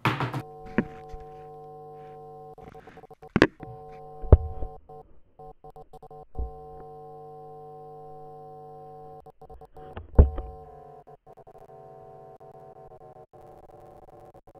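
A sustained synthesizer drone, a chord of several steady held notes, with a handful of dull thuds over it, the loudest about four seconds in and another about ten seconds in. The chord shifts to a different held drone about eleven seconds in.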